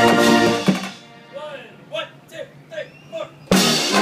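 Small marching band of brass and drums holding a loud chord that ends with a drum hit just under a second in. In the quieter gap that follows, voices call out several short times. The full band, with sousaphones, horns, snare drum, bass drum and cymbals, comes back in loudly at about three and a half seconds.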